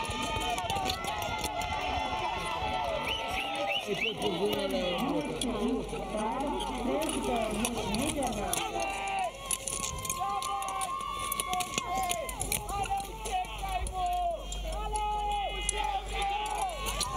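Trackside spectators and coaches shouting encouragement to speed skaters, with many voices overlapping. About halfway through, the shouts turn into longer held calls.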